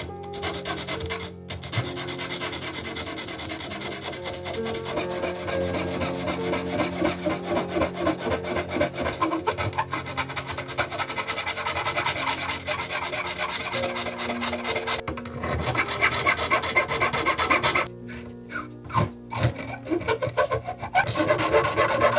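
Round needle file rasping inside a tuner hole of a wooden guitar headstock in rapid back-and-forth strokes. It breaks off briefly about two-thirds of the way in, then pauses for a few seconds near the end before starting again.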